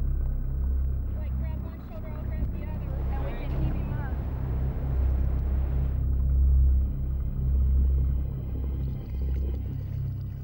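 Low steady rumble of a boat's motor heard underwater, with faint muffled voices.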